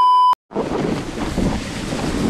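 A steady high test-tone beep with a TV colour-bars transition, cut off abruptly after about a third of a second, then after a short silence, wind buffeting the microphone.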